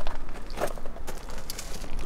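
Footsteps on a gravel lot with camera handling noise, over a steady low rumble of wind on the microphone.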